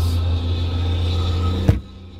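A steady low rumble, then a single sharp knock about 1.7 seconds in, after which the rumble drops away.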